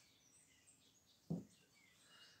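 Near silence while a cigarette is smoked, broken by one short low sound just over a second in, with faint bird chirps in the background.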